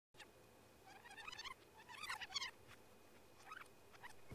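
Faint rewind editing effect: sped-up, high-pitched chattering voices in a few short warbling bursts.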